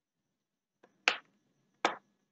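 Two sharp computer mouse clicks about three quarters of a second apart, with a faint tick just before the first.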